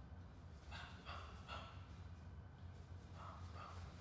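Short sharp exhales from a boxer throwing punches: three in quick succession about a second in, then two more near the end, over a low steady hum.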